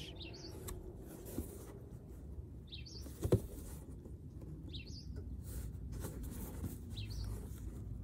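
A small bird chirping outdoors, four short chirps about two seconds apart over faint steady background noise, with one sharp click a little past three seconds in.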